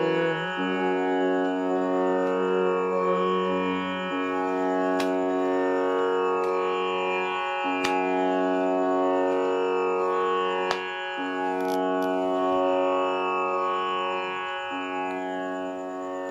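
Tanpura drone sounding steadily on its own, the cycle of strings renewing about every three and a half seconds, with a few faint clicks.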